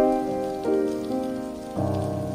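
Solo piano playing slow held chords, a new chord struck at the start and a fuller, lower one near the end, over a steady hiss of rain.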